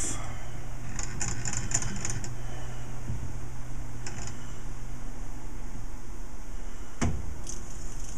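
A metal lathe's three-jaw chuck being handled and turned by hand, giving scattered light clicks, with a sharper click near the end, over a steady low hum.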